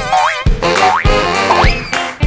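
Playful background music with a steady beat about twice a second and quick sliding notes that rise in pitch.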